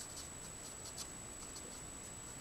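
Letraset Promarker alcohol marker's fine nib scratching over cardstock in short, quick colouring strokes, the strongest about a second in. A faint steady high whine runs underneath.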